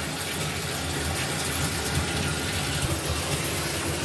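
A steady low rumble with an even hiss over it, holding level with no distinct events.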